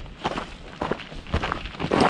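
Footsteps of people walking down a gravel and dirt path, a quick uneven run of about three steps a second.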